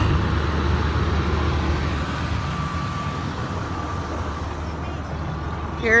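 2003 Ford Escape idling, heard from inside the cabin: a steady low hum with an even hiss over it, and a faint steady tone for a couple of seconds in the middle.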